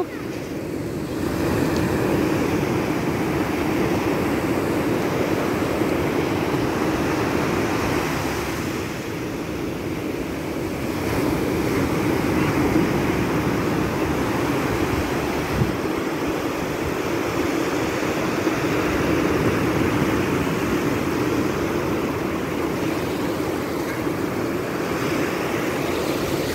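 Ocean surf washing onto a beach: a steady rush of breaking waves and foam that swells and eases slowly, with some wind on the microphone.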